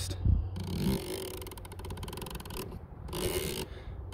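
Turret of a Discovery ED-PRS 5-25x56 riflescope being wound by hand, giving a rapid run of fine clicks for about two seconds, then a brief pause and a soft rub near the end.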